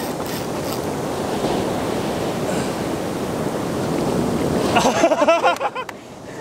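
Steady wash of ocean surf breaking on the beach. About five seconds in, a woman laughs briefly.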